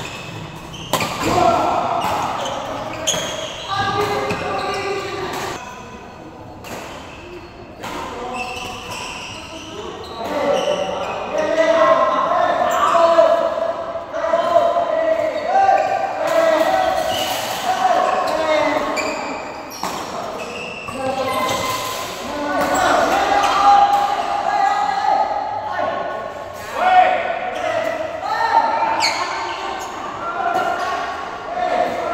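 Badminton doubles rally in a large indoor hall: repeated sharp smacks of rackets on the shuttlecock and players' footsteps on the court, with voices talking and calling out.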